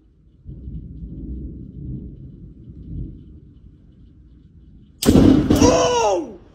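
Thunder rumbling low during a thunderstorm, then about five seconds in a sudden loud crack with a person crying out.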